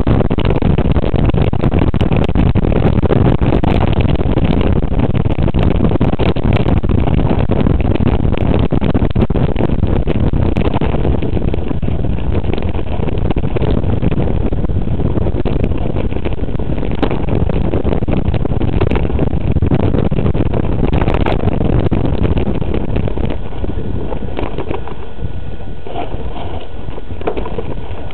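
Continuous heavy rumble and rattle from a bike-mounted camera riding a rough dirt trail on a knobby front tyre, with many short knocks from bumps and wind on the microphone; it eases slightly near the end.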